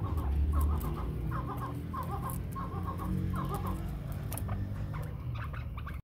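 Chakor (chukar) partridges calling: a string of short, repeated chuck-like notes in irregular bursts, over a low rumble.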